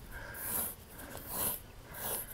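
A Highland bull breathing and snuffling through its nose close by as it is scratched under the chin, with slow, soft swells of breath.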